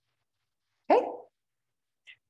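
A single short, sharp call about a second in, rising in pitch and lasting under half a second; the rest is near silence.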